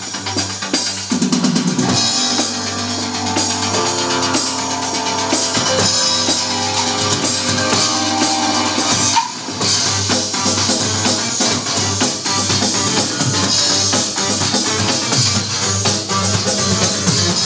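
Electronic drum kit played along to a rave track: a fast steady drum beat over a synth backing, with a short break about nine seconds in.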